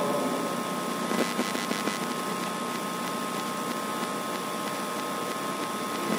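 Chalk writing on a blackboard: faint scratches and taps, mostly between one and two seconds in, over a steady background hiss with a thin high whine.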